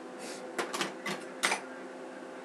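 Rustling handling noise: about five short scrapes and rustles in just over a second as hands twist and work natural hair into a bun. The last one is the loudest.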